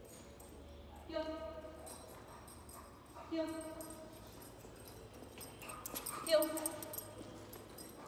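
A woman's voice calling the command "heel" three times, a few seconds apart, to a bulldog walking on a leash, with faint clicks and clinks in between.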